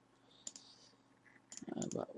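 Clicks at a computer's mouse and keyboard: a single sharp click about half a second in, then a few quick clicks near the end as the Firefox Help menu is opened.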